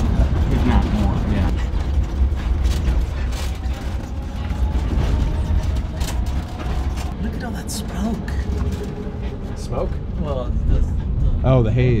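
Inside the cabin of an electric-converted Volkswagen Type 2 Samba bus on the move. There is no engine note, only a steady low road rumble with frequent clicks, rattles and creaks from the old body and fittings.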